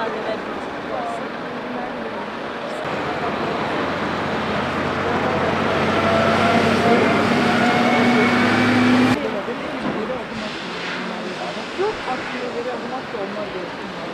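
Motorcycle engine running loudly, its pitch slowly rising over several seconds, then cut off abruptly.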